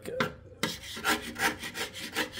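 Flat hand scraper blade scraping red paint off the steel body panel of a BMW E36 M3 in quick repeated strokes, a little over two a second. The paint lifts off very easily, a sign that it was never properly bonded to the metal.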